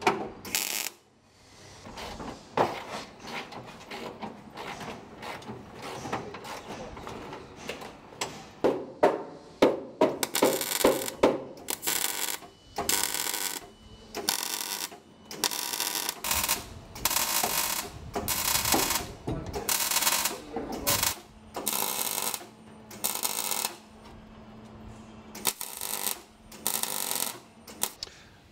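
Welding on steel car bodywork, heard as a run of short welds about half a second to a second each, with brief gaps between them.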